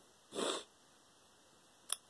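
A single short sniff through the nose, about a third of a second in, from someone who is upset. A brief click near the end, just before speech resumes.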